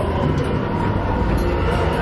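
Steady low rumble and hum of the attraction's hangar soundscape, an even machine-like drone filling a large hard-walled hall.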